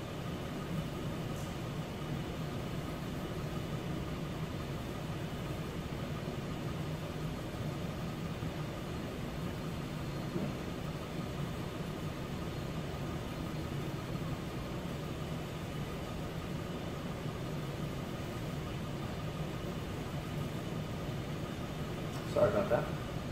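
Room tone: a steady low mechanical hum with a faint thin whine above it, unchanging throughout.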